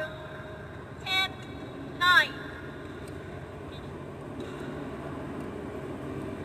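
Court shoes squeaking on a badminton court floor: two short, sharp squeaks falling in pitch, about one and two seconds in, over steady arena background noise.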